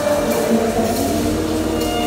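Live gospel worship music with a choir singing long held notes.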